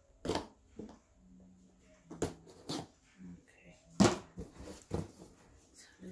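A cardboard box being handled as packing tape is peeled off it: a series of about six short, sharp scrapes and knocks of tape and cardboard, the loudest about four seconds in.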